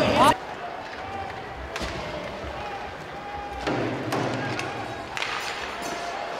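Ice hockey rink sound: a few sharp knocks of sticks or puck, and from about halfway through a louder stretch of skates on ice with a thud against the boards.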